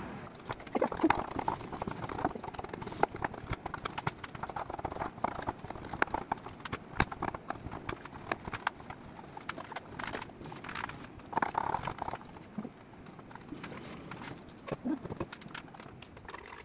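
Kitchen knife chopping vegetables on a wooden cutting board: quick, irregular knocks of the blade on the wood.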